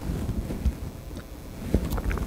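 Low rumble and soft bumps on the microphone, with a few faint clicks, in a pause between sentences.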